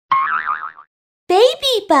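Cartoon intro sound effect: a short springy boing whose pitch wobbles rapidly up and down for under a second. It is followed by high-pitched cartoon voices exclaiming "Wow!" with sliding pitch.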